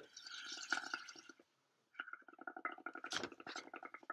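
Air blown through a drinking straw into a bowl of watery paint mixed with washing-up liquid, bubbling faintly. The bubbling breaks off briefly after about a second and a half, then starts again as a fast run of small pops.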